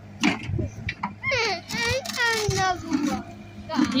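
A young child's high voice talking and calling out, over the low steady running of the mini excavator's engine.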